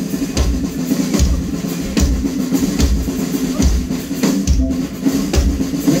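Live dance band playing a chilena mixteca: a drum kit keeps a steady beat over bass and held instrument notes.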